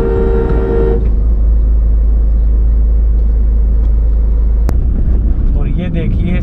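A car horn sounding a steady two-note tone, which stops about a second in. Then the steady low rumble of the car driving, with a single sharp click near the end.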